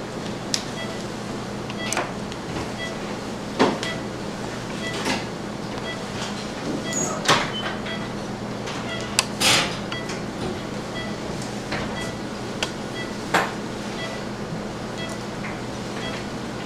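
Operating-room sound: the steady hum of surgical equipment with a faint, regular electronic beep, and scattered sharp clicks and knocks of laparoscopic trocars and instruments being handled, with a short hiss about halfway through.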